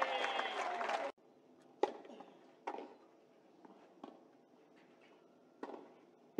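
A raised voice cut off abruptly about a second in, then a tennis rally: several sharp racket strikes on the ball, roughly a second apart, with quiet between.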